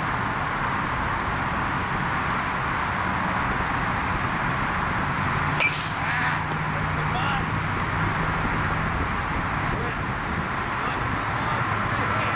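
A baseball bat striking a ball once, a sharp crack a little before six seconds in, over a steady outdoor background hum.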